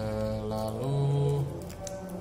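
A man's voice holding one long hummed note, which steps up slightly in pitch near the middle and stops shortly before the end.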